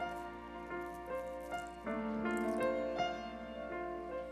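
Instrumental title jingle for a TV programme segment: a melody of held notes.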